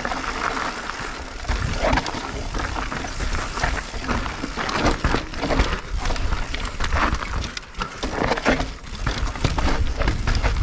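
Full-suspension mountain bike descending rocky singletrack: tyres crunching over gravel and stone steps, with a steady run of knocks and rattles from the bike. A low rumble of wind on the microphone runs under it.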